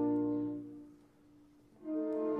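Orchestra with solo alto saxophone: a held chord fades away about a second in, a short near-silent pause follows, and a new chord enters near the end.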